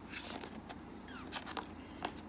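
Quiet handling of cardboard trading-card boxes: faint rustles, light taps and a couple of short scraping slides as the boxes are picked up and moved.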